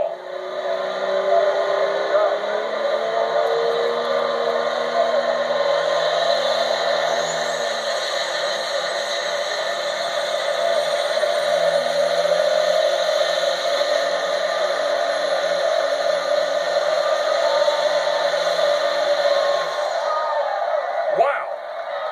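A super stock diesel Chevrolet pickup's engine running at full throttle under load while pulling a sled. The pitch climbs over the first few seconds, then holds steady for the run and drops away near the end. It is heard through a television's speaker.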